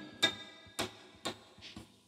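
Acoustic guitar string plucked three times, about half a second apart, while lightly touched midway between frets: each pluck gives only a short dull click with no harmonic ringing on, the sign of the finger not sitting over the fret wire.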